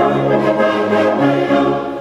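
Brass band of cornets, euphoniums and sousaphones playing sustained chords, the harmony changing every half second or so, with a brief dip at the end of a phrase near the end.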